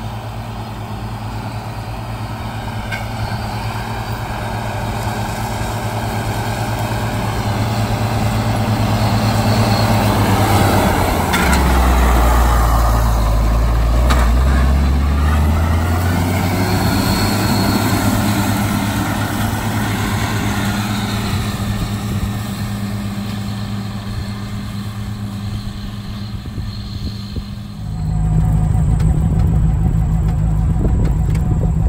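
Tractor engine and mower-conditioner running, growing louder as they approach and pass close by, the engine pitch shifting as they go past, then fading as they move away. Near the end it cuts suddenly to a different, steady vehicle engine heard from inside a cab.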